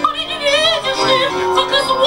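A woman singing high, held notes with a wide, wavering vibrato in an operatic style, amplified over a stage PA, with electronic keyboard accompaniment underneath.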